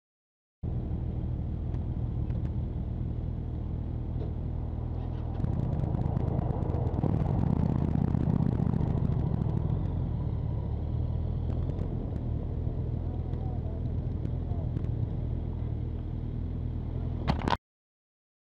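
Motorcycle engine running, heard from a camera on the bike. It starts abruptly just under a second in, gets louder about five seconds in and eases back after about ten seconds, then cuts off suddenly near the end after a short sharp noise.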